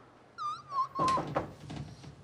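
A person coughing, just after a brief high-pitched squeak.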